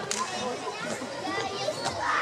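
Background chatter of many voices, children's among them, with two sharp knocks, one just after the start and one near the end.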